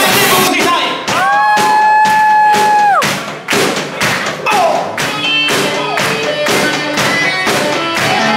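Live rock band playing: drum kit keeping a steady beat under electric guitar and bass, with a long held note from about one to three seconds in.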